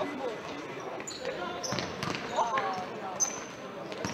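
Indoor futsal game sounds echoing in a sports hall: the ball being kicked and thudding on the court in sharp knocks, a few short high squeaks of shoes on the floor, and players' shouts and spectator chatter.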